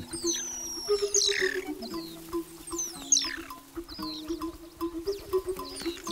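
Documentary music score of sustained low notes moving in steps, with high, falling chirping calls scattered over it several times.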